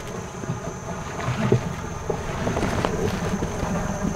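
Small tour boat's outboard motor running slowly with a steady low rumble, with wind buffeting the microphone.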